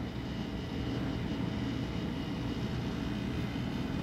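A steady, low mechanical drone in the background, even in level and without distinct events.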